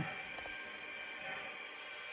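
Faint steady running noise of an O-gauge model passenger train's cars rolling slowly along the track, with a faint hum.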